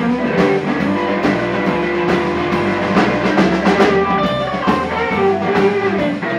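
Live blues band playing an instrumental stretch: electric guitars over a steady drum beat, with a few held lead-guitar notes about four seconds in.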